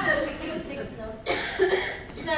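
A woman speaking, broken just past the middle by a short, sharp burst of breath like a cough.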